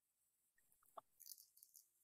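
Near silence, with one faint brief tick about a second in.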